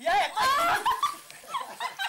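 High-pitched squealing and laughter from people's voices, loudest in the first second, then trailing off into shorter yelps.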